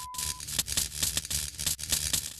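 Smashed laptop screen crackling and sputtering: a dense run of irregular electrical crackles, with a steady high electronic tone that cuts off shortly after the start.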